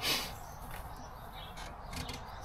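Faint rustling and light taps of a thin dashcam power cable being handled and pushed up toward the van's headliner, with a short breathy hiss at the start.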